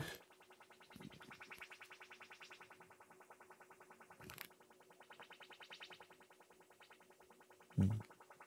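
An AM tuner's speaker plays a fast, repeating audio sweep carried on its 10 Hz–10 kHz sweep modulation. It is a faint, rapid string of synth-like chirps, about ten a second, that swells and fades as the tuner is retuned onto the station. The upper part of each sweep falls away sharply, showing the tuner's narrow AM audio bandwidth. There is a short click about four seconds in.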